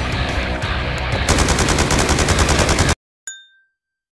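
Rapid automatic rifle fire, a fast even stream of shots, cuts off suddenly about three seconds in. A single bell-like ding follows and rings out briefly.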